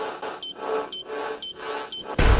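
Electronic intro sound effect for a loading-bar animation: short beeping tones repeating about twice a second over a pulsing, swelling hum.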